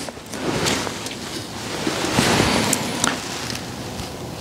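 A metal cook pot being picked up and set onto the pot stands of a small titanium wood-burning stove: rustling handling noise with a few light clicks.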